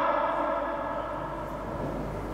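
A faint ringing tone with several steady overtones, fading slowly and evenly.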